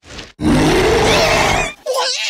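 A loud, harsh cry rising in pitch for about a second, followed near the end by a shorter wavering cry.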